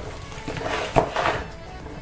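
Hands turning and rubbing wet raw chicken pieces in a plastic basin, giving a run of wet handling noises with a sharp knock about halfway through.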